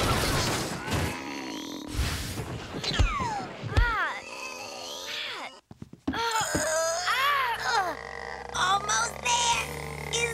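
Two girls grunting and groaning with effort as they struggle into very tight jeans, with a few thumps in the first half. Music comes in during the second half.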